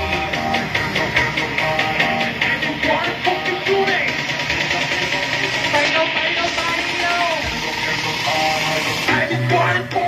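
Dance music with a steady beat and a sung vocal line; a heavier bass comes in about nine seconds in.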